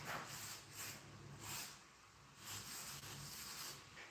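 Chalk rubbing on a chalkboard in a run of short, faint strokes as lines are drawn, with a brief pause about two seconds in.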